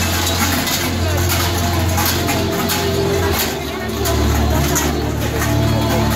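Large bells worn by fur-costumed Krampus (Perchten) runners clanging and jangling over crowd chatter. Music with a deep bass plays under it and changes note about halfway through.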